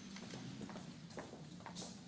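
Faint room tone with a low hum and a few soft, irregularly spaced clicks.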